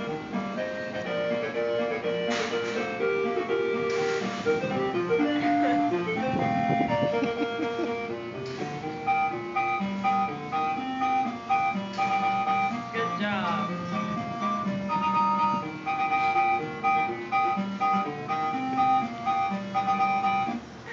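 Tinkly tune from a coin-operated kiddie carousel ride's music player, a simple melody of held notes that plays on through the ride.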